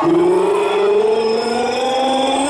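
A race commentator's voice holding one long drawn-out call that rises slowly in pitch.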